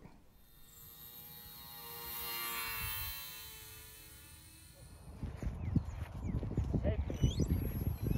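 Whine of an electric RC airplane motor as the plane flies past, swelling to its loudest about two and a half seconds in and then fading. From about five seconds in, wind buffets the microphone, and a shout of "Hey" comes near the end.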